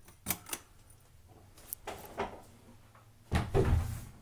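Handling and footstep noise from someone walking with a phone camera: a few light clicks and knocks, then a louder low thud-like rumble about three and a half seconds in.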